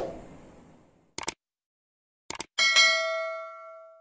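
Subscribe-button sound effect: a sudden hit fading away over about a second, two short clicks a little after, another pair of clicks a second later, then a bell ding that rings out for over a second.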